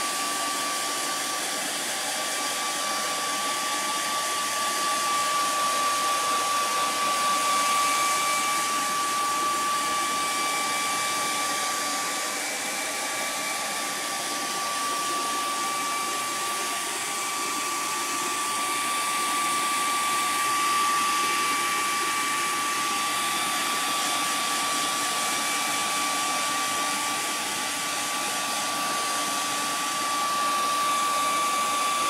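Hair dryer running steadily, a constant rush of air with a thin high whine, drying freshly applied fabric paint so it can be worked over again.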